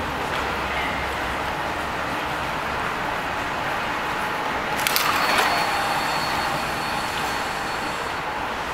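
Station concourse ambience: a steady rush of noise, with a brief clatter about five seconds in, followed by a thin high tone.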